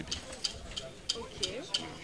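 Faint murmur of background voices with a steady, quick high ticking, about four to five ticks a second.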